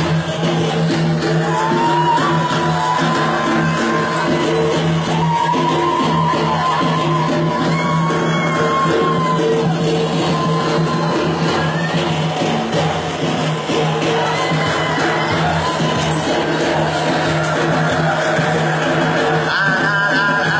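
Live band music with frame drums (def and erbane): a held, wavering melody line sounds over a steady low drone through roughly the first half.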